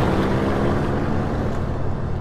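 Low steady rumble, a deep drone with a faint hiss above it, slowly fading after a boom that struck just before.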